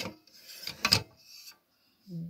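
Metal top cover of an Olympia SM9 manual typewriter being lifted off: a click, then scraping and rubbing of metal parts with a sharper knock about a second in, dying away halfway through.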